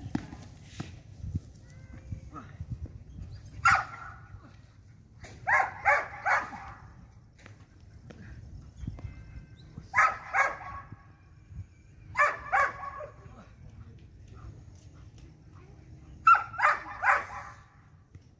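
Belgian Malinois barking in short groups of two to four quick barks, coming every few seconds with pauses between.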